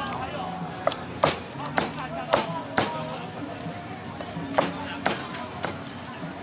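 Cleaver chopping food on a thick wooden chopping board: about six sharp knocks in the first three seconds, a pause, then three more near the end, some with a short metallic ring.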